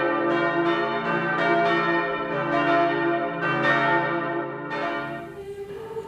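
Church bells pealing: overlapping strokes, two or three a second, each ringing on, fading out about five seconds in as a steady held note comes in.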